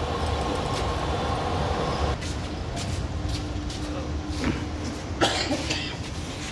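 A 15 HP electric gear motor and its gearbox turning the agitator arms of an RDF drying oven, running with a steady low hum and rumble. Some of the higher tones drop out about two seconds in, and there is a short burst of noise about five seconds in.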